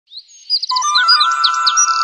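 Small songbird chirping, starting about half a second in with a quick run of high notes, then several separate swooping chirps. Under it runs a steady held musical note that steps up slightly in pitch.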